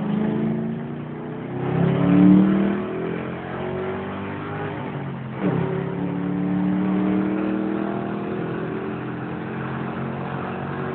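Ford Mustang V8 heard from inside the cabin, accelerating: the engine note climbs, loudest about two seconds in, drops sharply at a gear change about five seconds in, then climbs again.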